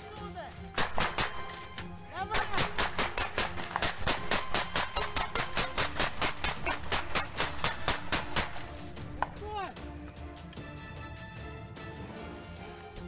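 Rapid, evenly spaced gunfire, about five shots a second, sustained for roughly six seconds after a couple of single cracks, with background music underneath.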